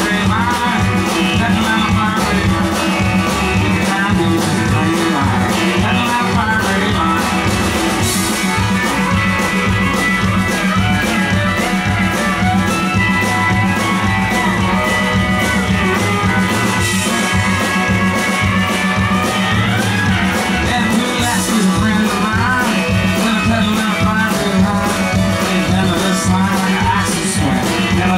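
Live country-rock band playing an instrumental break with a steady beat: electric guitars, bass and drums, with fiddle and pedal steel guitar, and sliding lead lines over the top.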